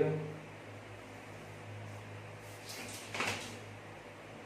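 A plastic pattern curve ruler sliding and being set down on kraft paper: a brief scraping rustle about three seconds in, over a steady low hum.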